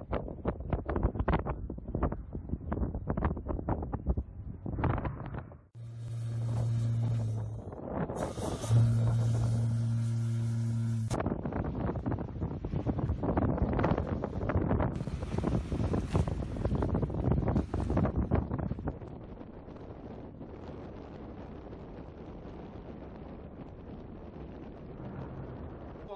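Wind buffeting the microphone over open sea, with the crackling, rushing roar of a Kalibr cruise missile's launch as it climbs out of the water. A steady low hum sounds for a few seconds in the middle, and the noise settles to a quieter steady rush near the end.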